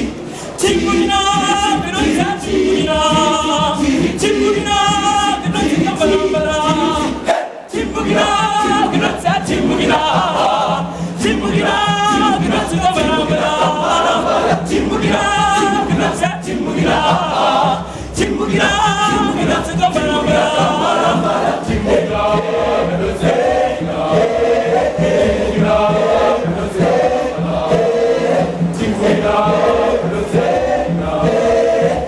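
Boys' school choir singing a cappella in rhythmic, repeated phrases, with a short break about seven and a half seconds in.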